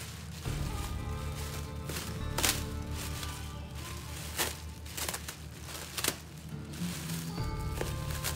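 Background music, with plastic stretch wrap on a pallet being cut and pulled apart, crinkling with several sharp crackles.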